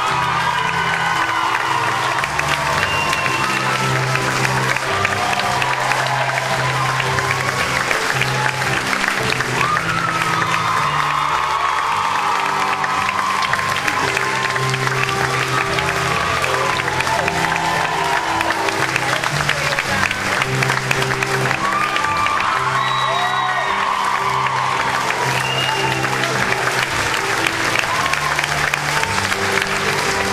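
Sustained applause from a theatre audience and cast over music with slow, held chords.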